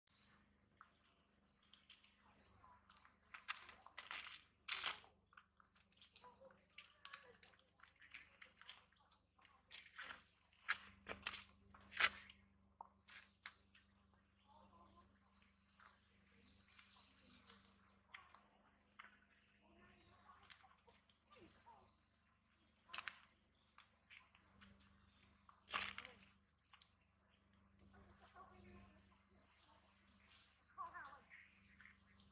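Small birds chirping rapidly and almost without pause, many short high calls each second. Occasional sharp clicks or snaps cut through, the loudest about twelve seconds in.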